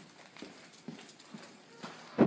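Faint footsteps of a dog and its handler on a concrete floor: a few light taps and knocks, roughly every half second.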